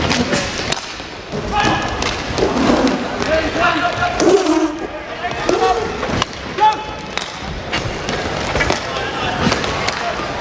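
Inline hockey in play: sharp clacks of sticks and puck scattered throughout, over the rolling of skate wheels on the court, with players and spectators shouting mostly in the first half.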